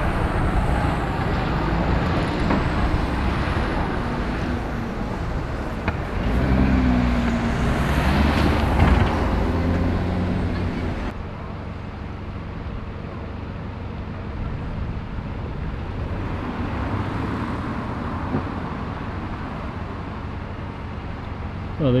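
A single-deck bus drives past close by, its engine note swelling and falling over several seconds. After a sudden change about halfway through, a double-deck bus idles steadily and more quietly at a stop.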